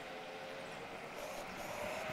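Electric scooter riding along: a faint steady motor whine over road noise.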